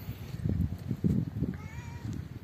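Footsteps and handling bumps on a handheld camera's microphone while walking, with a faint, short pitched call, rising slightly, near the end.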